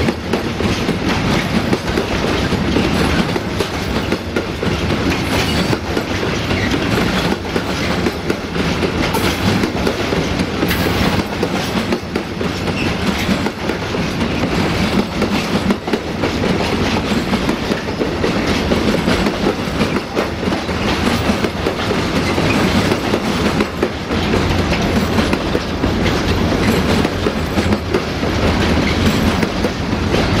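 Freight wagons of a long intermodal train rolling past close by, their wheels clacking over the rail joints in a steady stream.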